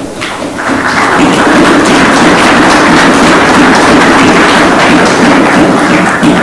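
Audience applauding, a dense run of many hands clapping that builds up over the first second, holds steady and starts to fade near the end.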